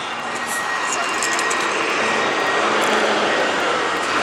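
Diesel city bus engine running, a steady drone that grows slightly louder over the few seconds.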